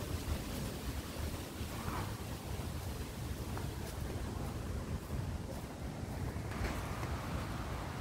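Breeze blowing across a phone's microphone: a steady low rush of wind noise.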